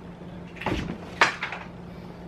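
Sneakers being handled and set on a shelf: a dull knock just over half a second in, then a sharper click about half a second later, over a steady low hum.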